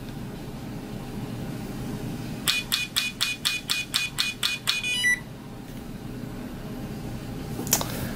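Implantest stability meter's probe tapping rapidly against a dental implant's healing abutment, about six quick even taps a second for a little over two seconds, ending with a brief high tone. The taps are the instrument measuring the implant's stability to give a reading.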